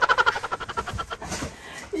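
A person laughing in a quick run of short pulses that fades away over about a second and a half.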